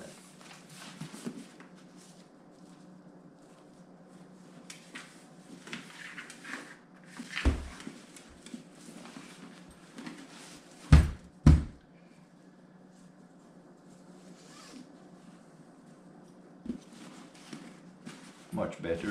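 Fabric helmet storage bags rustling as a helmet is slipped into a cloth sack and handled, over a low steady hum. A few sharp knocks cut through: one about halfway, then the two loudest about half a second apart.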